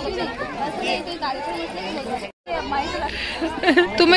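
Several people talking over one another in lively, overlapping chatter, with the sound cutting out completely for a moment a little past halfway.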